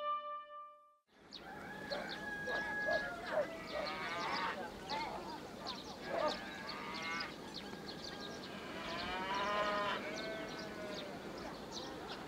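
Music fades out. After about a second of near silence, rural village ambience sets in: scattered, distant calls of people and farm animals over a steady background.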